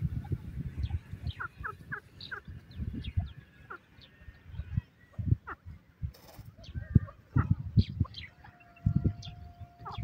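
Grey francolin clucking softly at irregular intervals as it forages, with small birds chirping in the background. A steady tone sounds during the last two seconds.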